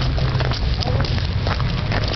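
Cruise boat's diesel engine running as the boat pulls away from the pier, a steady low rumble, with faint voices in the background.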